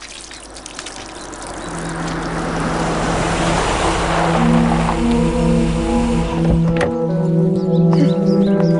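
Film background score: a rushing noise swells up over the first few seconds above a low rumble, while sustained synth notes come in and build into a soft ambient tune. The rumble cuts off suddenly about six seconds in.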